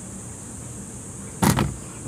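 One loud, sharp plastic snap about one and a half seconds in: a retaining clip on a car's instrument cluster letting go as the cluster is pulled out by hand. The snap is the sign that the clip has released.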